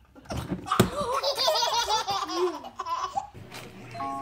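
Two toddlers laughing together in repeated bursts of high giggles, with a sharp knock just under a second in.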